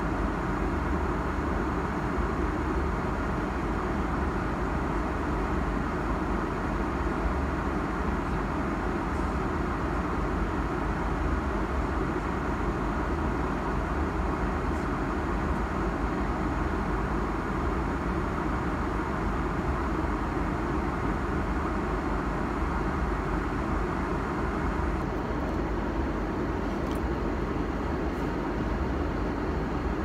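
Steady cabin noise of an airliner at cruise altitude: an even, low rush of engine and airflow that does not change, with a few faint clicks near the end.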